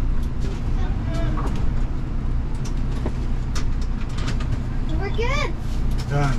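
Motorhome engine running with a steady low rumble, heard inside the cab. A child's high voice calls out briefly about a second in and again near the end.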